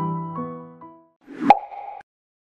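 Soft background keyboard music plays its last notes and fades out about a second in. Then a short rising whoosh ends in a sharp pop with a brief ringing tone: a logo sting sound effect.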